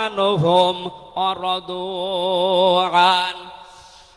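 A man's voice chanting in a melodic recitation tone: a few short gliding phrases, then one long held note with vibrato from about a second in, fading out near the end.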